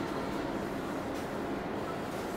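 Steady rubbing and scraping of a flat scraper blade sliding along a thin metal trim strip, pressing it down onto a glued board.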